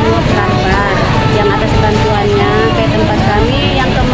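A woman speaking, over a steady low rumble.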